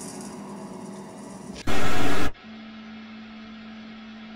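A quiet, hissy film soundtrack, cut off about a second and a half in by a loud burst of TV static lasting well under a second. A steady low hum with faint hiss follows.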